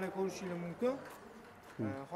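A man's voice with a few drawn-out, held syllables in the first second and another short one near the end, and a quieter stretch between.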